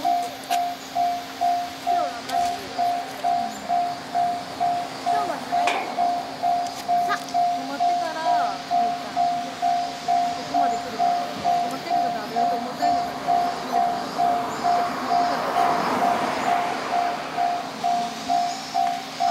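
Japanese level-crossing warning bell ringing steadily, an even two-tone 'kan-kan' about twice a second, signalling that a train is approaching.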